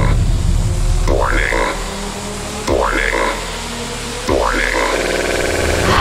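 DJ intro sound design: a heavily processed synthesized voice fragment repeats about every second and a half over a steady deep bass drone, with a buzzing stutter effect near the end.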